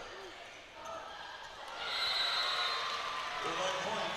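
Indoor volleyball rally: ball contacts on hands and court, then crowd and player voices swelling about two seconds in as the point is won.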